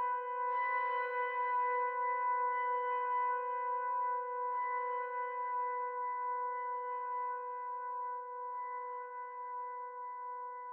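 Instrumental music: a single held drone note with ringing overtones, renewed by a swell about every two seconds and slowly fading.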